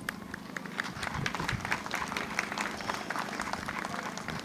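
A crowd applauding, many overlapping claps.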